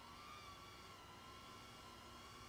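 Near silence, with a faint high whine that wavers slightly in pitch: the distant motors of a BetaFPV Pavo20 Pro cinewhoop drone in flight.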